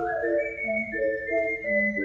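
Ocarina septet of seven ocarinas from soprano down to contrabass playing together: a high melody line held and stepping over short, repeated notes in the middle voices, with low notes coming in now and then beneath.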